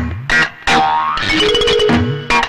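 Comic film background music of short plucked notes, with a rising slide about a second in that settles into a held note near the end.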